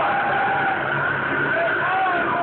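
Loud stage soundtrack through a PA, recorded on a phone: wavering tones that glide up and down over a steady high tone and a low pulsing underneath.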